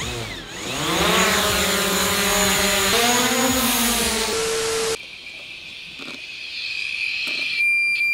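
Small camera drone's motors spinning up with a wavering whine over a hiss, a noise the owner calls new, the sign that the drone is not doing well. It settles into a steady tone and cuts off suddenly about five seconds in. Near the end a high steady beep starts from the faulty drone controller.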